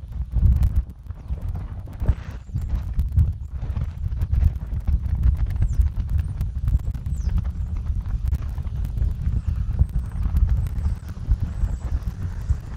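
Wind buffeting an outdoor camera microphone: a gusting, uneven low rumble with frequent small crackles.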